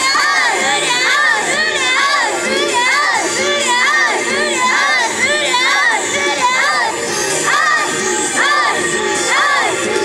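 High-pitched young women's voices shouting and cheering, many at once, in quick rising-and-falling calls about twice a second.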